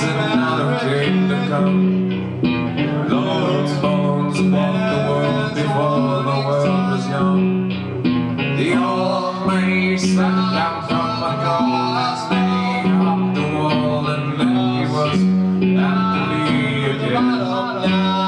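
A band playing a song: a man singing over strummed acoustic guitar, drums and low bass notes, with a steady beat.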